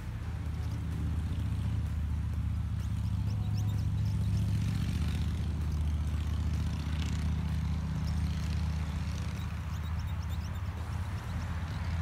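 A low, steady engine drone that grows louder over the first few seconds, holds, and eases slightly near the end.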